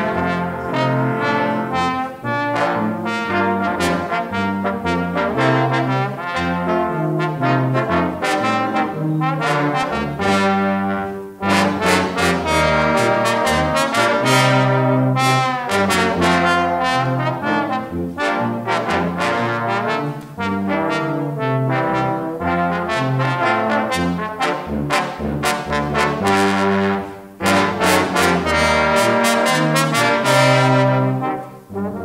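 Brass ensemble of trombones and a tuba playing a concert piece in several parts, with short breaks in the playing about eleven seconds in and near the end.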